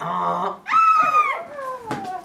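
Several young voices imitating a donkey's bray: two drawn-out calls, the second starting high and sliding down in pitch.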